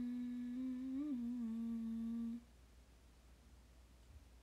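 A young woman humming one long held note that wavers and dips slightly in pitch about a second in, then stops about two and a half seconds in.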